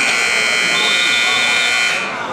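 Gym scoreboard buzzer sounding one long steady tone of about two seconds, signalling that the wrestling clock has run out.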